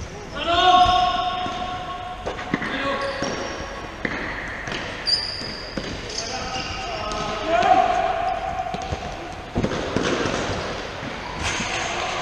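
Players shouting to each other during indoor five-a-side football, with several sharp strikes of the ball being kicked and bouncing on the wooden hall floor, all echoing in the large hall. The loudest shouts come about a second in and again around eight seconds.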